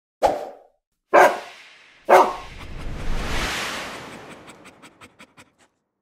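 A dog barks three times, about a second apart. Then a rising whoosh, and a quick run of short clicks that fade away, as an animated logo's sound effects.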